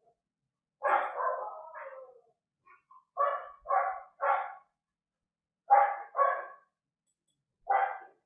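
A dog barking, about seven barks in short groups; the first is longer and trails off.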